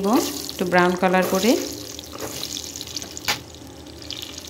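Hot oil sizzling in a pan as whole boiled eggs are put in to fry, a steady hiss with one sharp click about three seconds in.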